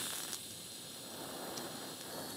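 A TIG welding arc hissing quietly and steadily while a small metal bracket is welded in place.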